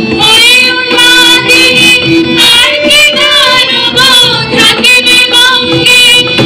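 A song: a singing voice with musical accompaniment, loud.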